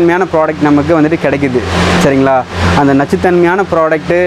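A man talking in Tamil over a steady low hum.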